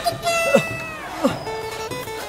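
Comic sound effects laid over background music: a held note bends downward with quick falling swoops, then steady held notes sound near the end.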